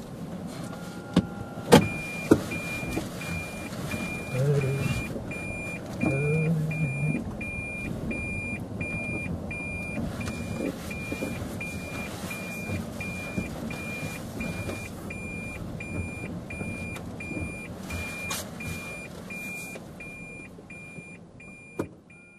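A car's warning chime beeping steadily, a little under two high beeps a second, starting just after a couple of sharp knocks about two seconds in, with a few brief low murmurs of voices.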